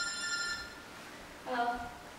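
A steady, high electronic tone lasting about a second, then a short vocal sound with a clear pitch near the end.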